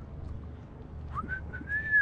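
A person whistling a short run of notes, beginning about a second in with a rising glide into a high held note, over a steady low rumble of wind on the microphone.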